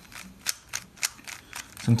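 A hand-held 3x3 Rubik's Cube being twisted face by face. Each turn gives a short, sharp plastic click, a few a second.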